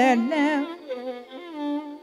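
Carnatic classical music: a single melodic line sliding and oscillating between notes in wide ornaments over a steady tanpura drone, with no drum strokes. The line trails off near the end.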